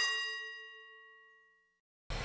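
Transition sound effect: a bell-like ding whose several ringing tones die away over about a second and a half.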